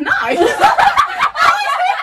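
A group of young women laughing loudly and talking over one another in a burst of excitement, with a few sharp hand claps in the first half.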